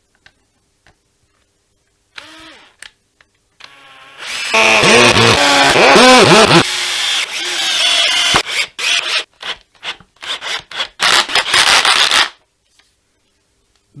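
Cordless drill-driver driving screws through a Jazzmaster tremolo plate into a guitar body. From about four seconds in, the motor speeds up and slows with the trigger, then runs in a series of short bursts that stop about twelve seconds in.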